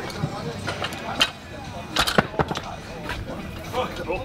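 Weight plates being handled on a barbell, giving a few short sharp knocks, the loudest about two seconds in, over a background of gym noise and voices.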